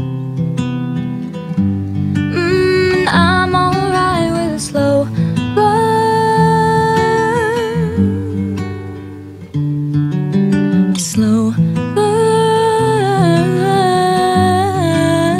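A female voice singing a slow country-pop melody over strummed acoustic guitar, its long held notes wavering with vibrato.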